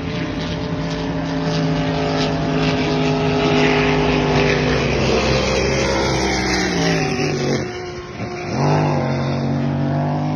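Racing powerboat engine at high revs as a boat runs past on the course. Its pitch sinks and the level dips about eight seconds in, then the engine revs up sharply again.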